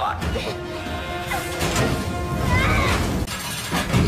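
Film action soundtrack: orchestral score mixed with shattering and crashing effects.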